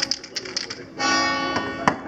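Background music with strummed guitar chords, mixed with short clicks.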